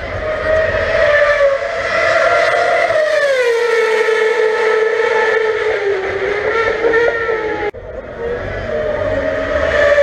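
Red Bull Formula 1 car's engine screaming at high revs. The pitch winds down about three seconds in, and after a brief break near the end it climbs again.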